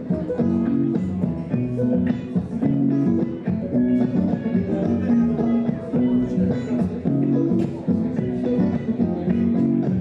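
Guitar played through a loop station: layered, looped guitar parts with plucked notes playing a traditional Irish tune, without singing.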